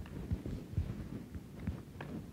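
Three low, dull thumps with faint rustling and small clicks between them, close to the microphone.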